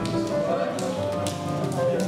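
Live instrumental music with held, steady notes, crossed by a few light taps.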